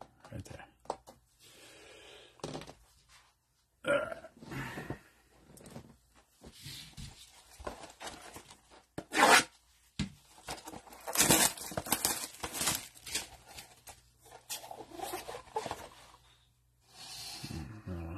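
Handling of trading-card packaging: plastic top loaders and a cardboard blaster box clicking and rustling in gloved hands, with a louder burst of tearing and crinkling about nine seconds in as a blaster box is opened.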